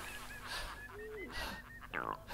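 Cartoon husky panting with its tongue out, a breath roughly every second, over a low wavering tone that glides down and fades about a second in.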